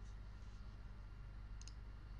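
Faint room noise with a low steady hum, and a single computer mouse click about a second and a half in.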